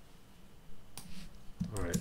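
A single sharp click about halfway in, from computer input during a terminal session, over quiet room tone; a man says 'right' near the end.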